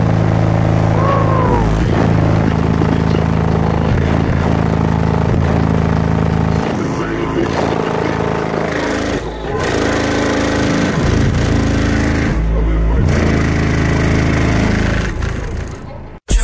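Bass-heavy music played loud through four HDC3 18-inch subwoofers, heard inside the car: deep bass notes held for a second or two at a time and shifting in pitch, with the music's higher parts over them. It fades out near the end.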